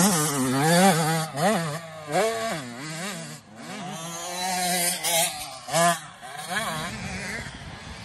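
Small youth dirt bike engine revving up and down again and again as the rider works the throttle. It is loudest in the first second and briefly again about six seconds in.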